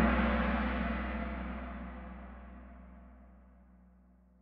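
Kahoot's answer-reveal sound effect: a gong-like chime, struck just before, ringing and dying away steadily over about four seconds.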